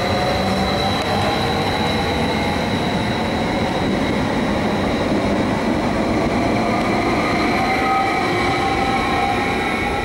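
TILO electric multiple-unit trains (Stadler FLIRT sets) running through the station: a steady loud rumble of wheels on rail, with a high steady whine and several fainter whining tones that slowly rise in pitch from about halfway through.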